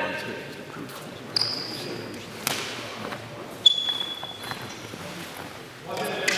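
Three sharp knocks about a second apart, echoing in a large sports hall, the last the loudest; two of them leave a short high ringing tone. A voice is heard at the very start.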